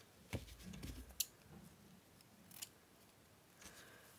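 Faint handling of craft scissors and fabric ribbon: a few light, separate clicks from the scissors being picked up and opened, with soft rustling in the first second.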